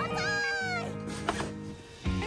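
A cat meow: one falling call lasting under a second, over background guitar music.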